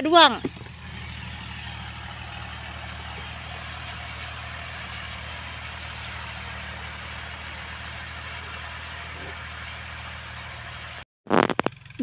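Farm tractor engine running steadily while pulling a three-disc plough through the soil, heard at a distance as an even hum.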